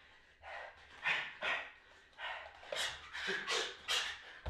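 A man's heavy, rapid breaths, huffed in and out about twice a second with exertion.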